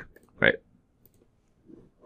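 A few faint computer mouse clicks as a menu option is picked and the property panel is clicked shut, after a single short spoken word.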